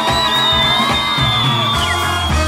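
Funk brass band playing live, horns and rhythm section together. Over the music a single long high whoop from the crowd rises right at the start, holds, and drops away near the end.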